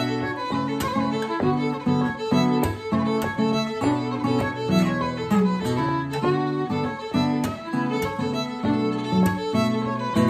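Fiddle and acoustic guitar playing an Irish reel in A: the fiddle carries a fast run of melody notes while the guitar strums chords in a steady rhythm.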